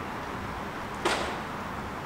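Steady background noise of a railway station platform, with one short, sharp whoosh about a second in that fades within a fraction of a second.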